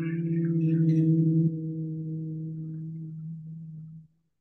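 A person humming one long, steady low note on the out-breath of a humming breathing exercise. It drops in loudness about a second and a half in, trails off, and stops near the end.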